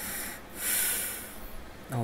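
A man's breath blown out close to the microphone, heard as two hissy exhales: a short one at the start and a louder one lasting about a second. A man's voice starts at the very end.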